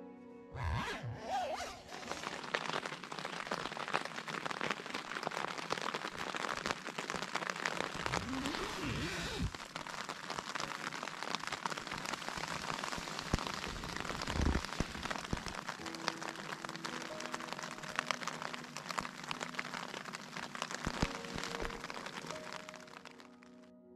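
Steady rain pattering on a tent fly, heard from inside the tent, over background music. There is a low thump about fourteen and a half seconds in.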